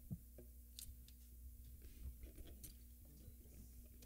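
Near silence: faint room tone with a low steady hum and a few small clicks and taps.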